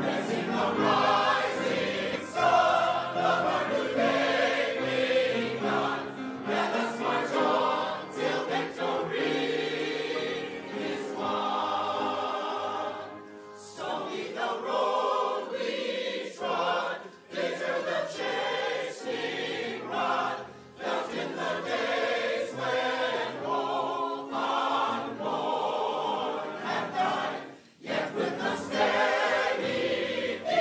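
A mixed choir of men and women singing in parts, accompanied by an upright piano, with short pauses between phrases near the middle and near the end.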